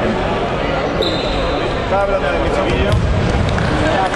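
Voices and chatter echoing in a sports hall, with a basketball bouncing on the wooden court. A thin high tone sounds briefly about a second in.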